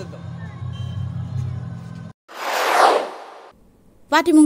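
A low, steady hum cuts off abruptly about two seconds in. Then a whoosh transition effect, a loud burst of noise sweeping downward, lasts about a second.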